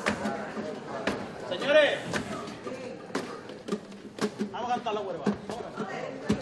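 Voices in a large hall with sharp wooden knocks about once a second, wooden staffs struck on a theatre stage floor.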